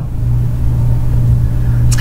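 A steady low rumble or hum with nothing else over it.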